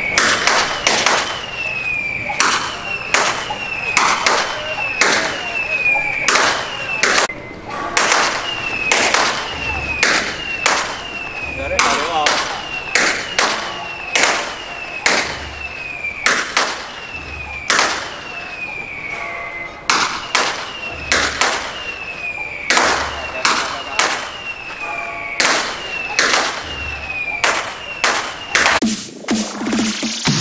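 Temple procession percussion: gongs and cymbals struck in a steady, driving rhythm, and a gong's ringing tone falling in pitch after strokes every second or two.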